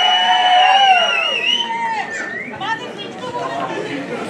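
A single high, held vocal shout lasting about two seconds, wavering near its end, followed by crowd chatter and voices in a large hall.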